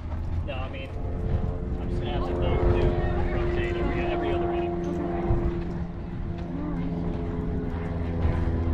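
A steady engine drone that builds up over the first couple of seconds and fades near the end, over low rumble and faint voices in the background.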